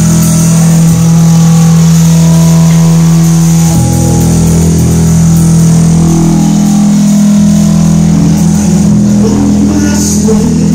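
Live rock band with electric guitar, bass guitar and drum kit playing loud sustained low chords. The chord changes about four seconds in.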